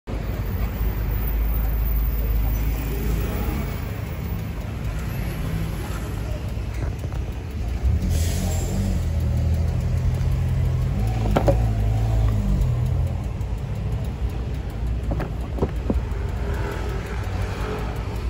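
2017 Harley-Davidson Electra Glide Ultra Limited's Milwaukee-Eight 107 V-twin idling steadily with a low rumble that grows a little stronger about halfway through.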